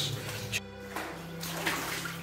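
Background music with held low notes, over a couple of short splashes of footsteps wading through shallow water.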